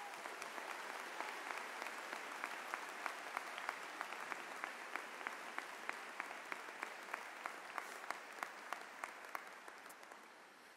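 Audience applauding, with sharper single claps standing out about three times a second; the applause fades near the end.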